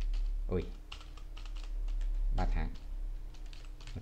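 Computer keyboard typing: a quick run of key clicks lasting about a second and a half.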